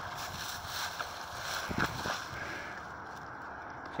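Steady outdoor background noise, like wind on a phone microphone, with a faint rustle or knock about two seconds in.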